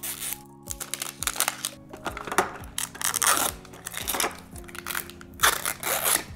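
Plastic wrapping and a seal strip being peeled and torn off a 5 Surprise Mini Brands capsule ball, with irregular crinkling and crackling, heaviest about two to three seconds in and again near the end as the capsule opens. Soft background music runs underneath.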